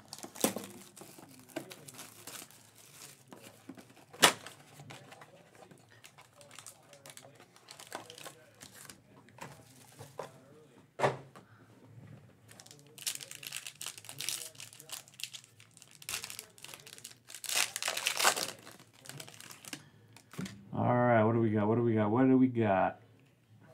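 Hands opening a trading-card hobby box and its foil-wrapped card pack: scattered sharp clicks and taps of cardboard, then two spells of crinkling and tearing as the foil wrapper is ripped open.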